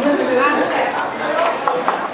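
People talking, with two light clinks of dishes or cutlery near the end.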